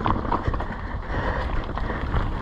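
Norco Sight A3 mountain bike riding over a dirt trail, heard from a handlebar-mounted camera: wind buffeting the microphone and tyre rumble, with a sharp knock of the bike over a bump near the start.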